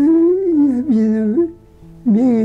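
An elderly man's voice singing a slow melody in long held notes, stepping down in pitch about halfway through and breaking off shortly before the end. Soft background music plays underneath.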